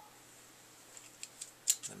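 Handling and opening a folding pocket knife: a few small, sharp clicks in the second half, one louder than the rest.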